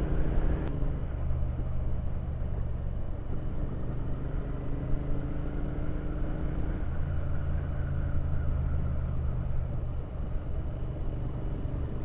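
Royal Enfield Interceptor 650's parallel-twin engine running steadily at cruising speed, heard from the bike itself with wind and road noise, its note shifting slightly about a second in and again around halfway.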